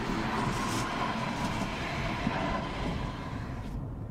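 Tram running past in city traffic: a steady rushing rumble with a faint hum. The hiss falls away just before the end.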